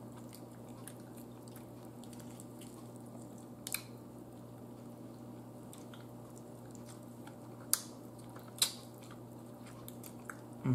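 A person eating turkey neck by hand: soft chewing and mouth sounds as the meat is pulled from the bone, over a steady low hum. Three short sharp clicks stand out, about four seconds in and twice near the end.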